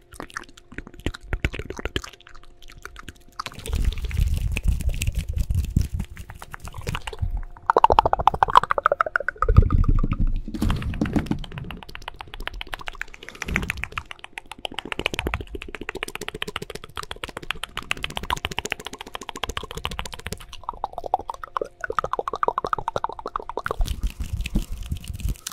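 Fast close-mic ASMR triggers: rapid clicking mouth sounds and quick finger and hand sounds on and around the microphone. Two stretches of low thudding come from handling the mic.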